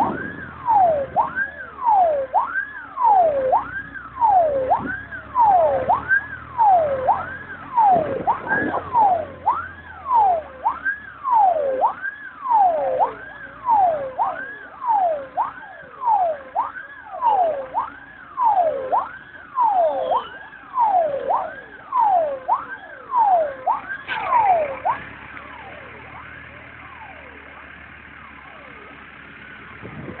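Fire engine sirens sounding a fast wail, each sweep rising quickly then falling from high to low about once a second, with a second siren overlapping more faintly. They cut off about 24 seconds in, leaving the low hum of the car, and start up again at the very end.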